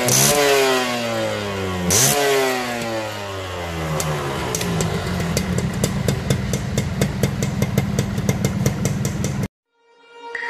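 Suzuki Xipo (RGV 120) two-stroke single-cylinder motorcycle engine heard at its exhaust, blipped so the pitch rises and falls twice in the first few seconds. It then settles to a steady run with quick, even popping from the exhaust, and the sound cuts off suddenly near the end.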